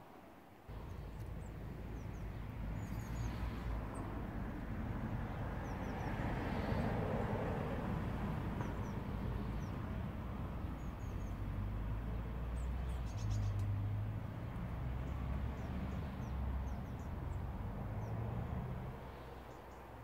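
Wood-gas camping stove burning wood pellets with a steady rushing of flames and a gusty low rumble of wind on the microphone, which starts about a second in; faint bird chirps over the top.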